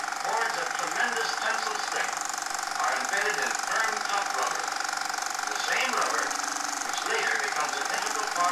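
Muffled, indistinct talking over a steady hum and constant hiss.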